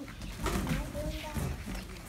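Quiet, wordless voices with a few short pitched, gliding sounds, mixed with the scrape and rustle of a large cardboard stage set being shifted.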